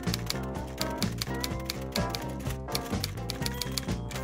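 Typewriter key strikes clacking in a quick run over theme music, the sound effect for a title being typed out.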